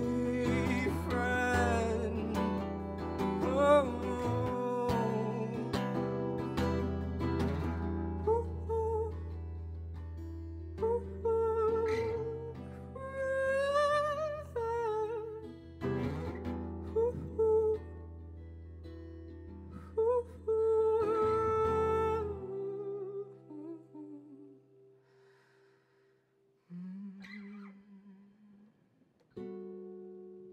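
Acoustic guitar with a singer's wordless, drawn-out vocal notes, the song winding down and fading out a little after twenty seconds in. A couple of soft, isolated guitar notes follow near the end.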